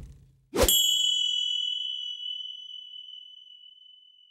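A logo-sting chime: one sharp hit about half a second in, then a single clear ringing ding that fades away slowly over the next few seconds.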